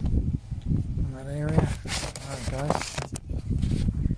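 A man's voice: two short, unclear utterances without clear words, over a steady low rumble, with one sharp click about three seconds in.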